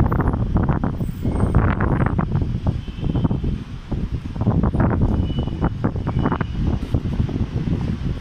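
Wind buffeting a phone's microphone in loud, uneven gusts of rumble.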